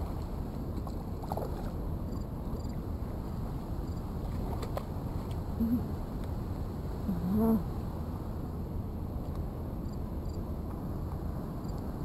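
Steady low background rumble outdoors, with a person's short hummed 'mm' sounds twice around the middle and faint insect chirping.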